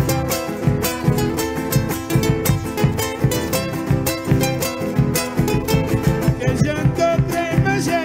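Live Argentine folk music: several acoustic guitars strummed in a steady, even rhythm through an instrumental passage, with singing coming in right at the end.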